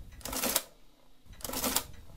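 Olivetti Multisumma 20 electromechanical adding-listing machine running two subtraction cycles as the minus key is pressed. Each cycle is a short mechanical clatter of the motor-driven mechanism and printer, about a second and a half apart.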